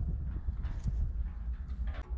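Wind buffeting the microphone as a steady low rumble, with a few faint knocks.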